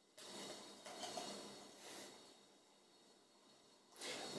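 Dark porter being poured from a bottle into a glass, a faint pouring sound that trails off about two seconds in.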